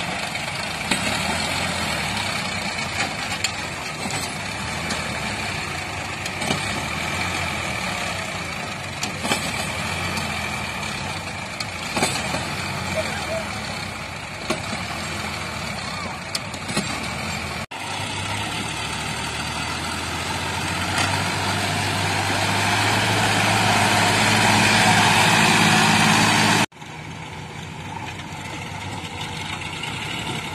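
Sonalika DI-47 RX tractor's diesel engine working hard as it pulls a fully loaded trolley, the engine note growing louder over several seconds in the second half before dropping away suddenly, then running more quietly.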